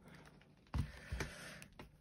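Tabletop handling of a vinyl ring-binder of cash envelopes and a marker pen: light rustles and clicks, with two dull knocks about a second in as the binder is turned round on the table.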